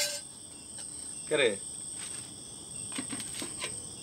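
Crickets chirring in a steady, high-pitched drone. A short falling vocal sound comes about a second and a half in, and a few faint light clicks follow near the end.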